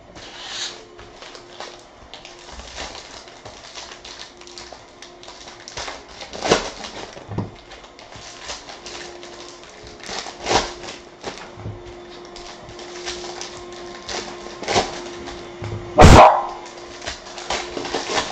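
Plastic card-pack wrappers crinkling and tearing as packs are handled and ripped open, in a run of short rustles. About sixteen seconds in a dog barks once, the loudest sound, over the faint steady hum of a vacuum cleaner that the dog dislikes.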